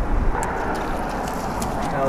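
Steady rushing noise of wind and choppy water around a small boat, with faint voices underneath.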